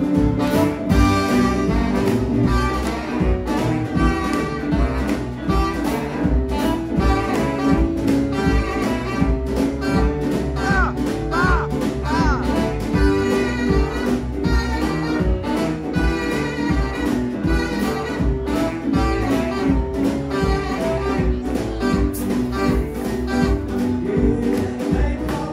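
Live swing band playing an instrumental passage: saxophones, upright double bass, guitar and drum kit over a steady beat, with three short bent notes about halfway through.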